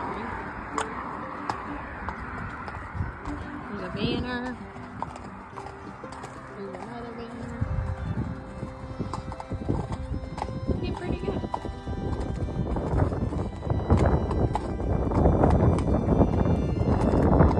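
A palomino Quarter Horse gelding's hooves clip-clopping at a walk, about one step every 0.7 s, on a hard path over a road bridge. A low rumble of traffic from the road below grows louder through the second half.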